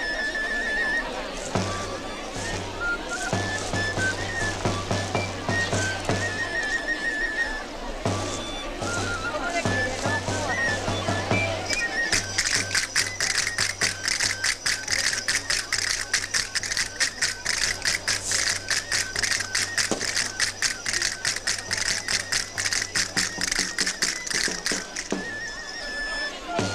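Traditional Extremaduran dance music from a tamborilero's pipe and drum, with the dancers' castanets. From about 12 seconds in, the castanets clatter in a fast, dense, even rhythm that becomes the loudest sound.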